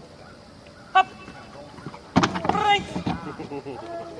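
A dog handler's short, sharp shouted command about a second in, then a louder, longer stretch of voice about two seconds in. This is the command that sends the dog off from heel.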